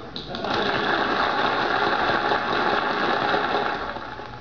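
Studio audience applauding on an old radio-show recording played from a vinyl record. The applause starts just after the song ends and dies away near the end.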